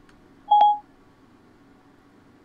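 Mac Siri's electronic alert tone, one short clear beep about half a second in, signalling that Siri has stopped listening and is processing the spoken request.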